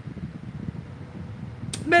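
Low steady background rumble with a faint constant hum during a pause in a woman's speech; her voice returns near the end.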